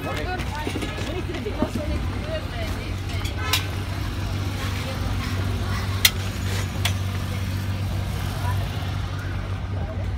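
Street-market bustle: voices talking briefly at the start over a steady low hum of vehicle noise, with a few sharp knocks, the loudest about six seconds in.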